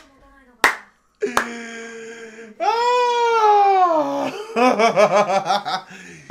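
A man laughing hard in quick, evenly repeated bursts in the last second and a half, after a single sharp clap about half a second in. Before the laugh comes the loudest sound, a long held pitched sound that swells and then slides down in pitch over a couple of seconds.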